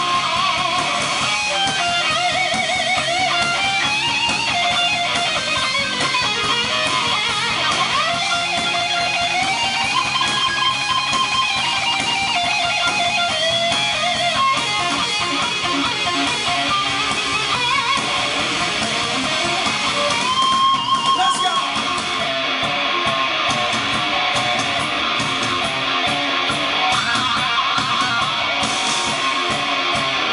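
Live hard rock band playing loudly: an electric guitar plays melodic lead lines over bass and drums, with no vocals.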